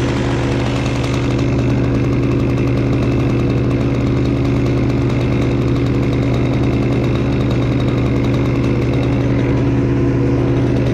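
Chainsaw engine idling steadily at a constant speed, with no revving.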